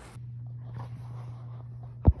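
Faint steady low hum with a few soft rustles and ticks.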